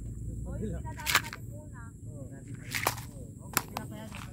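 Clear plastic compartment tackle box being shut, its lid and latches snapping closed in three sharp plastic clicks spread over a few seconds.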